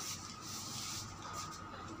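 Faint steady background noise with a faint thin whine, and no distinct event: ambient room tone in a pause between speech.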